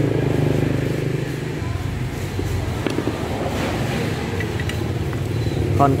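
A motor vehicle engine running nearby, a steady low hum that is strongest at the start and eases off about one and a half seconds in.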